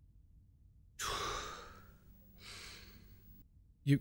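A man's heavy sigh: a breath out that starts sharply about a second in and fades, then a softer breath about two and a half seconds in.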